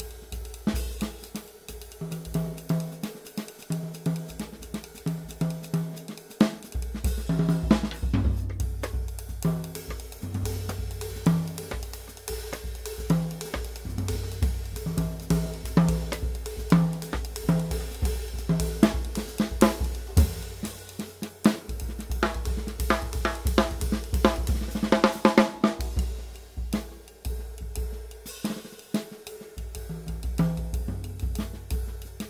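Jazz drumming on a small Gretsch Catalina Elite kit: stick strokes on a riveted Paiste Traditional 18-inch flat ride cymbal, a warm cymbal, over bass drum, snare and tom hits. A dense flurry of strokes comes about five seconds before the end.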